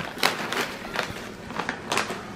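A few sharp clicks and taps at irregular intervals, handling noise of things being moved about, the loudest about a quarter second in and just before the end.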